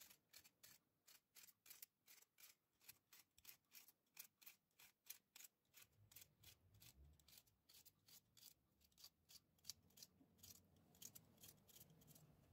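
Serrated knife slicing a red bell pepper by hand into strips: a rapid run of faint, crisp cutting clicks, about four a second.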